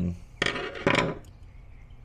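Two short scraping contact noises, about half a second apart, from a metal tool against parts inside an opened power inverter.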